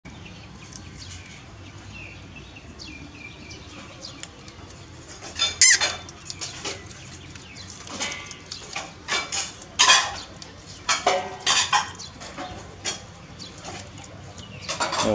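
A series of short, sharp animal calls, loudest and most frequent from about five to twelve seconds in, with a few faint high chirps before them.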